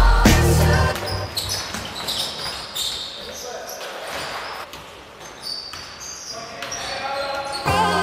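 Background music that drops out about a second in, leaving the live sound of a basketball game in a sports hall: a ball bouncing on the wooden court and players' voices. The music comes back near the end.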